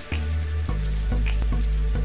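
Intro music with a steady deep bass note under a constant sizzling hiss like food frying; it gets louder just after the start.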